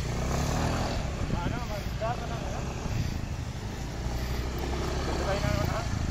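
Small motor scooter engine running as it is ridden in circles through loose beach sand, with a steady low engine note throughout.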